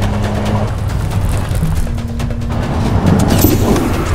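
A car driving at speed, engine and road noise, mixed over dramatic trailer music with low held notes.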